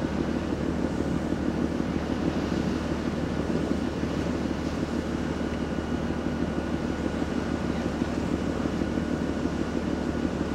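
Steady low drone of a freight ferry's engines and machinery, heard from the open deck while under way, with a faint high steady whine above it and wind buffeting the microphone.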